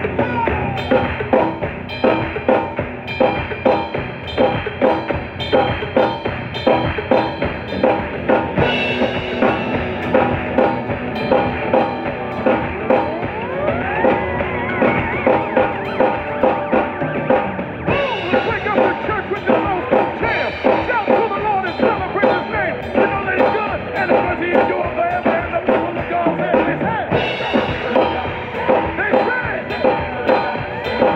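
A live gospel band track with vocals playing, with an SPL Unity birch drum kit and Sabian cymbals played along to it in a steady groove of kick, snare and cymbal strokes.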